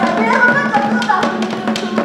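Live drum ensemble beating a fast, even rhythm of about four strokes a second, with voices singing over it in traditional Gambela dance music.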